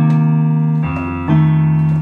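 Nord Stage keyboard with a piano sound playing sustained left-hand jazz shell chords (root, third and seventh, without the fifth). One chord rings, then the chord changes about a second in and again shortly after.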